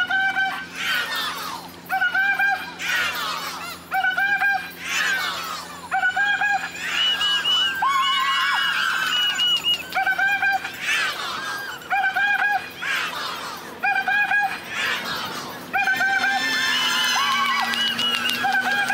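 An accessible pedestrian crossing signal beeping the same short doubled electronic tone about once a second, over the sound of passing traffic. A different, higher tone sounds briefly about halfway through and again near the end.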